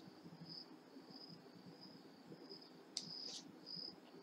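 Near silence with faint high-pitched insect chirping, repeating about every half second. Two faint clicks come about three seconds in.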